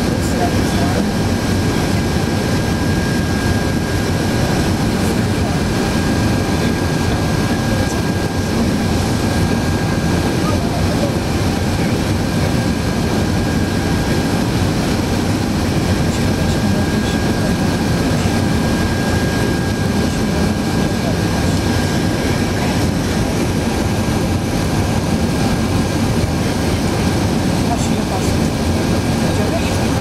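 Steady cabin noise of an Airbus A380 on final approach: engine and airflow noise heard from a seat over the wing, with the flaps extended. A faint steady high whine runs through it.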